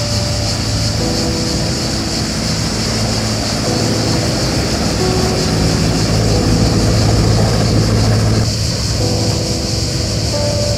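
Cicadas singing in a steady, shrill chorus, with a motor workboat's engine running as it goes along the canal. The engine hum grows loudest about seven seconds in.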